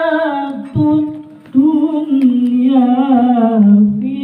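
A man chanting an unaccompanied Islamic devotional text into a microphone, in long, wavering held notes, with a short pause for breath about a second in.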